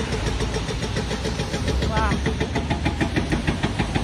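Diesel engine of heavy demolition-site machinery running: a steady low drone with a fast, even clatter.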